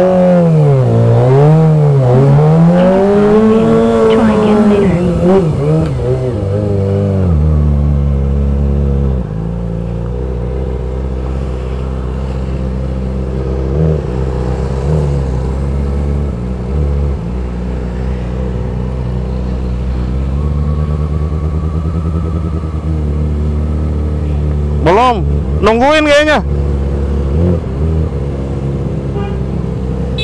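Motorcycle engine revving up and down repeatedly for the first several seconds, then settling into a steady idle, with two short bursts of revving near the end.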